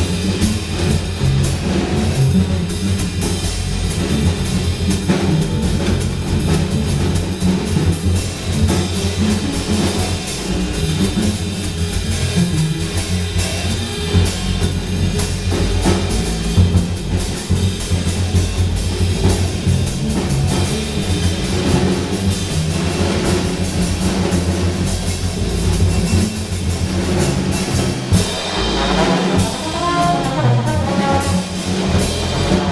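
Live free-jazz trio of drum kit and upright double bass playing busily together, the drums prominent. Near the end a trombone comes in with bending, sliding notes.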